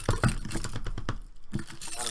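Quick clicking and tapping of Magic: The Gathering cards being gathered up by hand and stacked on a playmat, busiest in the first second, with one more knock of the pile near the end.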